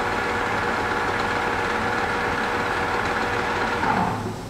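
Clausing-Metosa C1745LC gap-bed engine lathe running at a high spindle speed: a steady mechanical hum with a constant whine, the whine dropping out near the end.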